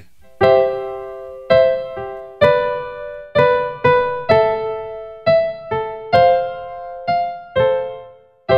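Piano sound from a software instrument, played live from a MIDI keyboard: a slow run of block chords, each struck and left to fade, about one a second.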